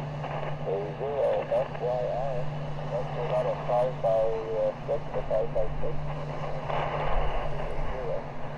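Weak single-sideband voice from another station coming through the Elecraft KX2 transceiver's speaker, heard faintly under a steady hiss of band noise with a low hum beneath it. The voice is broken and comes and goes over the first few seconds, then only the static remains.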